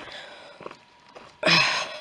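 Footsteps of a walker on a dry dirt-and-stone path, faint, then a short loud rush of breath-like noise close to the microphone about one and a half seconds in.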